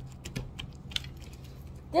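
Sticky homemade slime being stretched and squeezed between fingers, making a run of small irregular clicks and squelches, a couple of them louder.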